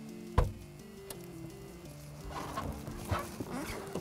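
Background music, with a sharp thump about half a second in and a lighter click soon after, then rustling and handling noises in the last seconds as the sedan's trunk is opened and someone leans into it.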